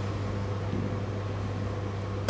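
A steady low hum over faint room noise.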